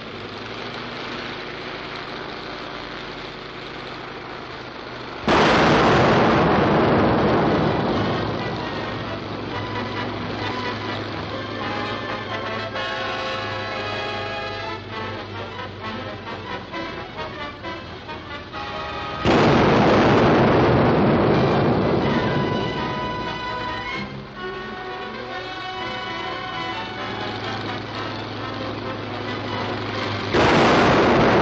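Two loud explosions about fourteen seconds apart, each starting suddenly and fading over a few seconds: landmines going off under a landing plane, as a film sound effect. Background music plays throughout.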